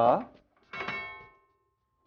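The lock of an antique painted wooden chest chimes as it is worked: one bright ring struck about two-thirds of a second in, dying away over about a second, with one tone lingering.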